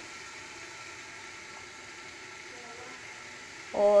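Onion-tomato masala frying in oil in a steel pot: a steady, soft sizzle with no stirring knocks.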